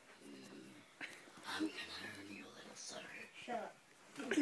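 Faint whispered or hushed talking, with a small knock about a second in.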